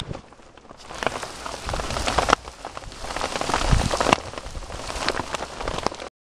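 Rain and hail hitting a plastic tarp overhead: a dense crackling patter of sharp hits that thickens about a second in, with a few louder single impacts.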